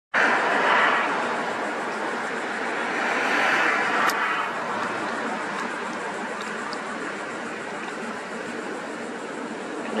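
Road traffic noise: an even rushing of passing vehicles that swells twice, near the start and around three to four seconds in, then slowly fades, with one sharp click at about four seconds.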